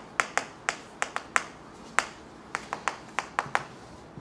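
Chalk tapping and clicking against a chalkboard while a short line of words is written: about a dozen sharp, irregular clicks.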